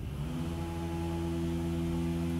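A steady machine hum that starts about a quarter second in, rising briefly in pitch before holding an even pitch.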